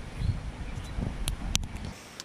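Wind buffeting the microphone, with rustling and a couple of sharp clicks from camera gear being handled inside an open backpack.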